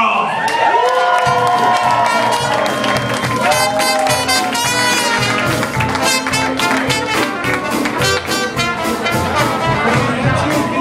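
Live jazz band striking up an upbeat number: brass horns playing the melody over bass and drums, with the rhythm section coming in about a second in.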